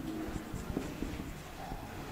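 Marker pen writing on a whiteboard: a run of short, irregular scratching strokes as letters are written.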